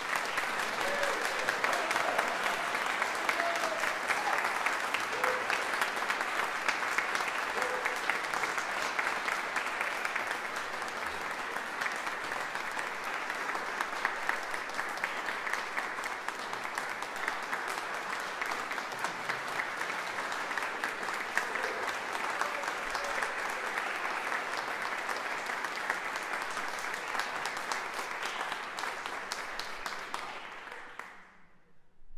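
Audience applauding steadily, a dense patter of hand claps that dies away near the end.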